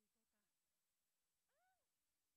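Near silence, with only very faint traces of voices: a few syllables at the start and one short rising-and-falling vocal sound about a second and a half in.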